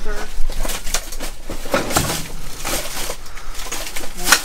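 Thin plastic trash bag crinkling and rustling, with packaged goods and boxes shifting and knocking, as a gloved hand rummages through the bag's contents.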